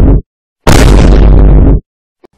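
Explosion sound effect edited in and played twice: the end of one loud boom, a moment of dead silence, then an identical boom about a second long that starts abruptly and cuts off.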